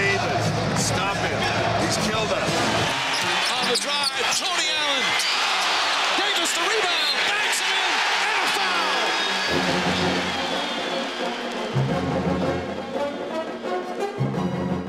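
A basketball being dribbled on the hardwood court, with short sharp bounces and a loud arena crowd. A film music score plays under it for the first few seconds, drops out, and comes back about ten seconds in.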